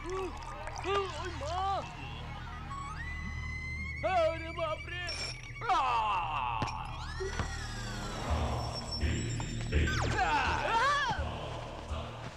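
Film soundtrack: a horror-style background score with sound effects, mixed with wordless vocal cries and groans.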